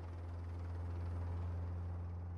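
Steady, even noise from the onboard camera of a Formula 1 car at speed, over a constant low hum, with no clear engine note standing out.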